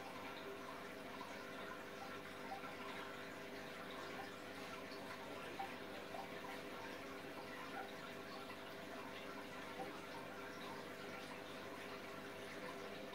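Faint, steady trickle of water in an aquarium over a low steady hum, with a few small splashes or drips.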